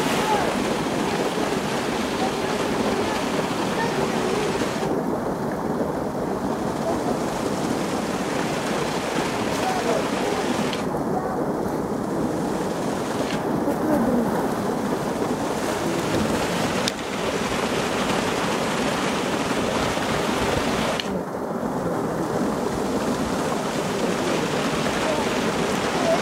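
Polar bear splashing and thrashing in a pool, water churning and spraying without let-up.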